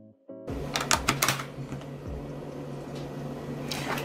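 Background piano music cuts off just after the start, then a run of sharp clicks and clinks as coins drop into a plastic digital coin-counting bank. Near the end there is a rustle of handling as the bank is picked up.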